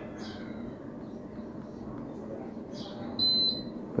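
A split air conditioner's indoor unit gives one short, high beep a little over three seconds in, acknowledging a command from its remote control. Under it runs a faint, steady low background noise.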